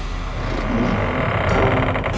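A steady low rumble with a held drone from a film trailer's soundtrack.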